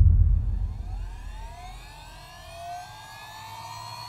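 A deep boom that fades away over the first two seconds, under several high tones that glide slowly upward and level off, like a siren winding up.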